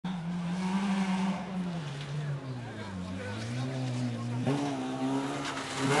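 Rally car engine revving as the car comes towards the bend. Its note drops over the first few seconds, jumps up sharply about four and a half seconds in, and grows louder near the end as the car approaches.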